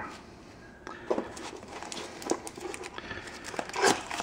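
Foil-wrapped Magic: The Gathering 2015 Core Set booster packs crinkling and rustling as they are picked up and set down on a table, with a few soft taps and a louder rustle near the end.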